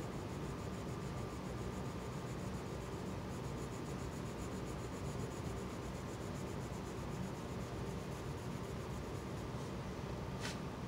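Faint scratching of a colored pencil shading across paper in quick, short, repeated strokes, over a steady low hiss.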